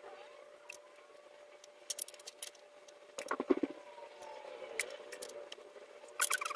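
Small clicks and light scraping as fan wires and small plastic parts are handled at a 3D printer's hotend, with a short cluster of louder knocks about three and a half seconds in. A faint steady hum runs underneath.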